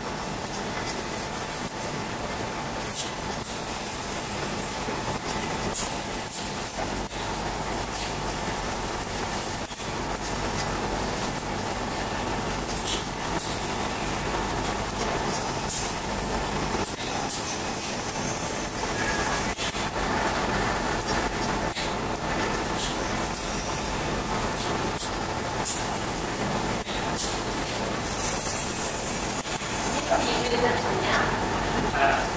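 CO2 laser cutting machine running through a cutting cycle on 1.1 mm ITO glass: a steady mechanical whir with scattered short clicks, growing slightly louder partway through.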